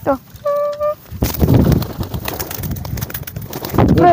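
Pigeon wings clapping and flapping rapidly in a loud burst of about three seconds as a racing pigeon is thrown up into the air. A short falling cry and a brief steady-pitched call come just before it.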